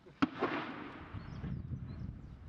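A single sharp bang, as of a shot or blast, about a quarter second in, followed by a rolling echo that dies away over about a second, then a low rumble.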